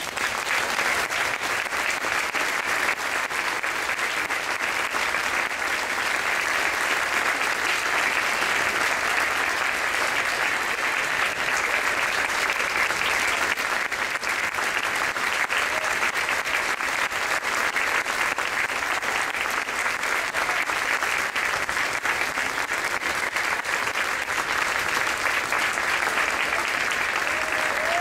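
Audience applauding: dense, even clapping that starts just as the concert band's music ends and holds at a steady level.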